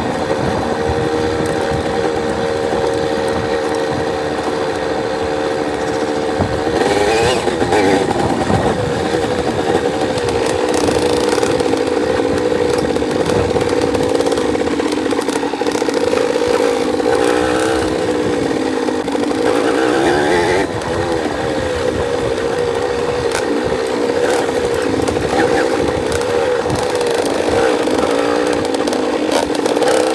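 Dirt bike engine running close to the microphone, holding an even pitch for the first six seconds or so, then rising and falling with the throttle for the rest of the time.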